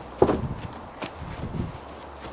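Dull thumps and scuffling of a person tumbling on a grass lawn. The loudest thump comes just after the start, with weaker ones about a second in and near the end.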